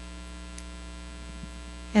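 Steady low electrical mains hum from the microphone and sound system, even and unchanging.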